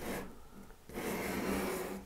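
Pastel stick rubbing across paper as lights are blocked in: a brief stroke at the start, then a longer one from about a second in.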